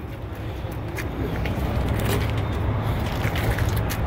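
Steady low rumble of an idling vehicle engine, with a few faint clicks.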